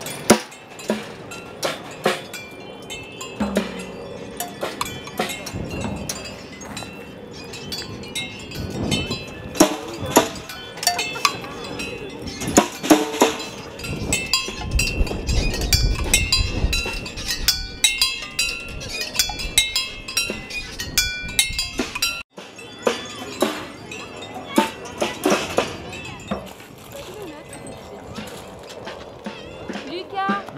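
Wind-driven percussion sculptures spinning in the breeze, their metal cups and beaters knocking on drums and metal. The result is an irregular run of knocks and clinks, some leaving short metallic ringing tones.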